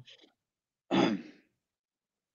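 Near silence broken about a second in by one short, breathy sigh from a man.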